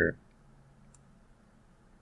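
A few faint computer-mouse clicks in the first second, after a spoken word trails off.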